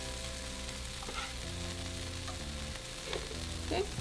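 Food frying in a hot pan: a steady sizzle, with soft background music underneath.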